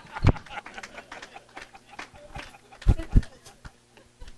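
Laughter fading out in a large room, with a few dull thumps, one about a third of a second in and two close together near the end, typical of a handheld microphone being bumped.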